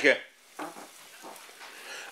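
Potatoes and a minced pork cutlet frying in a pan: a faint, steady sizzle.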